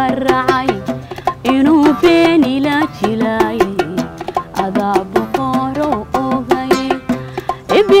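A woman singing a wavering, ornamented melody, accompanied by an oud and a steady pattern of hand-struck small drums.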